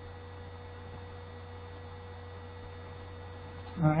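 Steady electrical mains hum with a faint higher tone and light hiss, at a steady level; a woman's voice starts just before the end.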